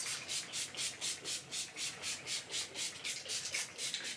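Fairly faint, even rhythmic rubbing or swishing, about four strokes a second.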